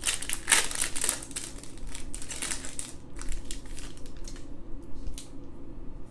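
Foil trading-card pack wrapper being torn open and crinkled by hand: dense crackling for about three seconds, then thinning to a few scattered crinkles.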